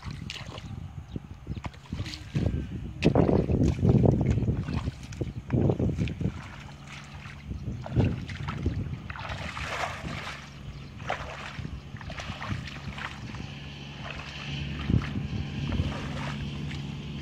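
Footsteps wading through shallow muddy water in a flooded rice field, sloshing and splashing unevenly, loudest a few seconds in. A steady low hum joins about halfway through.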